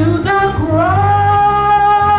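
A woman soloist singing a church solo into a microphone. About a second in, her voice rises onto one long held note.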